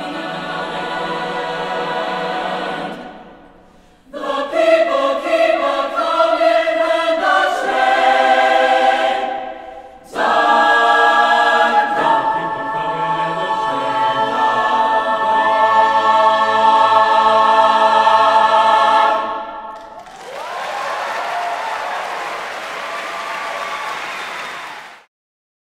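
Chamber choir singing the closing phrases of a spiritual, ending on a long, loud held chord. Audience applause follows for the last few seconds.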